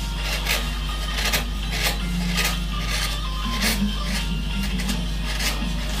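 Hand carving chisel cutting into a wood panel: a series of short scraping cuts, about one or two a second, each shaving wood away. Background music plays underneath.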